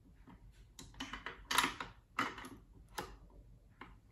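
Light metal clicks and scrapes of an SKS rifle's two-piece bolt being fitted back into the receiver by hand and slid forward, with a handful of separate clicks, the loudest about one and a half seconds in.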